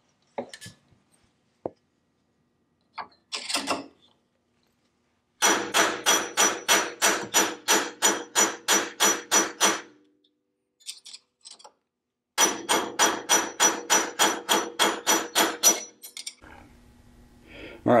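A mallet driving a flathead screwdriver against the notched spring preload collar of a Fox coilover shock, turning it to tighten the spring. The strikes come in two quick runs of about four a second, each run lasting a few seconds, and each strike rings metallically, after a few scattered clicks of tool handling.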